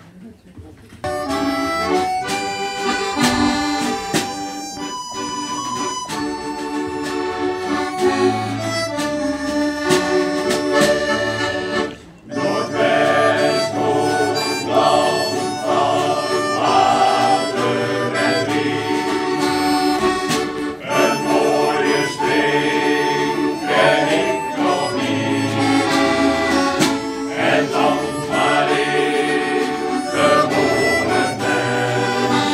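Accordion and harmonica playing an instrumental introduction to a shanty-style song, with a brief break about twelve seconds in before the tune carries on.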